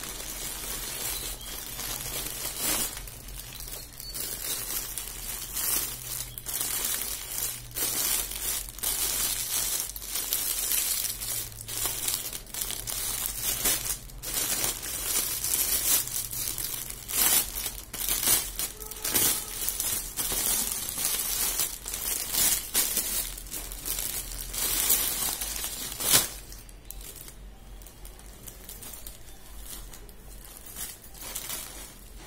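Plastic packaging crinkling and rustling in irregular bursts as a courier mailer and the clear plastic wrap of a garment are handled and pulled open. It goes softer for the last few seconds.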